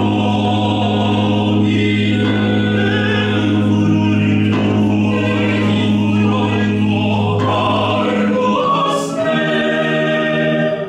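Small vocal ensemble singing an early-17th-century concertato motet, accompanied by positive organ and theorbo. The voices enter together after a pause over a long held low bass note, which drops out about eight seconds in as the upper voices move on to the end of the phrase.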